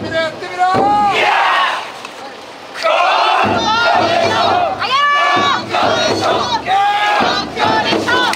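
A team of bearers of the Kokkodesho taiko float shouting calls together as they heave the float up. The calls come as a string of long, loud cries, with a short lull about two seconds in.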